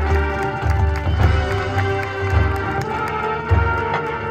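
High school marching band and front ensemble playing a field show: sustained chords over a repeating low bass pulse, with scattered percussion hits.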